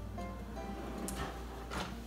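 Soft background music on acoustic guitar, with a faint knock near the end as a wooden kitchen drawer is pushed shut.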